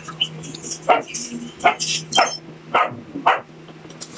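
A dog barking: about five short barks, a little over half a second apart.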